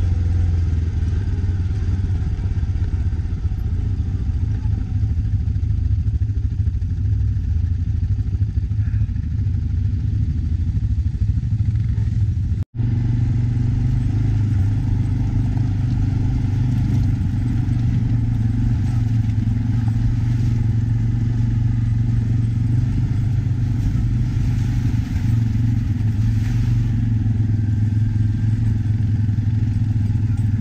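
ATV engine running steadily while riding over a rocky dirt track. The sound cuts out completely for an instant near the middle, then the engine drone carries on at a slightly higher pitch.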